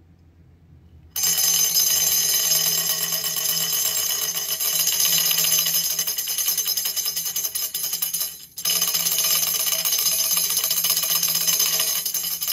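Handheld frame drum being shaken and tilted, a dense continuous rattle that starts about a second in, breaks off for a moment about two-thirds of the way through, then resumes.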